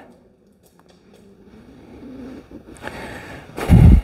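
Footsteps and shuffling movement on a concrete shop floor. A short, loud, low thump comes near the end.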